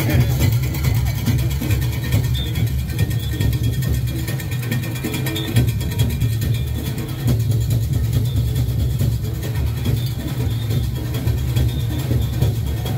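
Junkanoo parade music: drums beating a dense, steady rhythm with heavy low end, over crowd voices.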